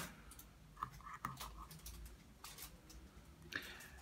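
Faint, scattered cuts and scrapes of a knife scoring the skin of a whole fish on a wooden cutting board.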